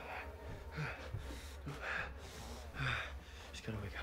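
A young man's gasping breaths, about one a second, over a low steady drone.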